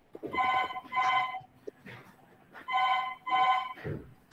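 A telephone ringing with an electronic double ring: two short ring tones, then a pause, then two more.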